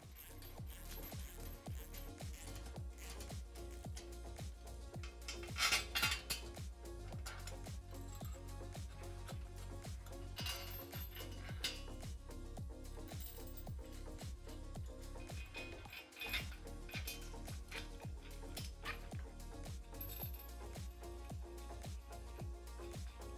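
Background music with a steady beat, over a few metallic clinks of bolts, washers and nuts being handled. The clinks are loudest about six seconds in and again around ten seconds.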